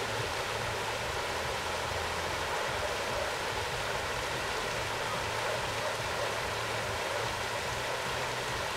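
Steady rushing background noise with a low hum underneath, unchanging throughout.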